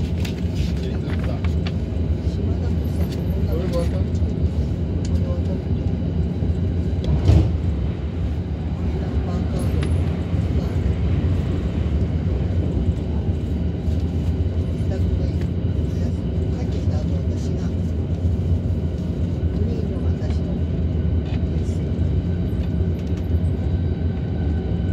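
Steady running rumble of a Tokaido Line train, heard from inside a double-decker Green car. About seven seconds in there is a sharp thump, and a train on the adjacent track rushes past.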